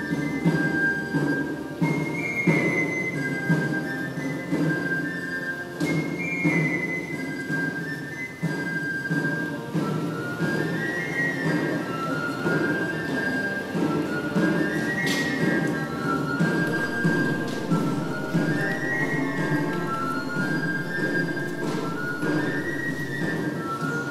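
Cathedral pipe organ playing a traditional Barcelona procession tune, the music of the giants and festive figures, adapted for organ: a high stepping melody over sustained low notes.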